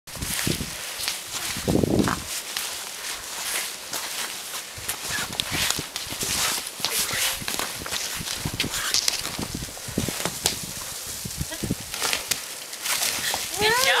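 Deep powdery snow crunching and swishing under a child's hands and knees as they crawl through it, in many short irregular crunches.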